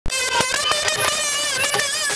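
Live Bengali baul folk song: a woman singing a long, wavering held note into a microphone over a reedy accompaniment, with a few hand-drum strokes.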